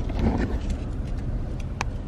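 Steady low rumble of a vehicle cabin with small clicks and rustles from plastic drink cups and straws being handled, and one sharper click near the end.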